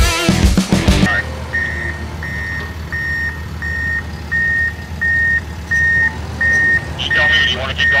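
Rock music cuts off about a second in. Then a reversing alarm beeps steadily, about three beeps every two seconds, over the low running of the Komatsu D51 bulldozer's diesel engine as it backs up the slope.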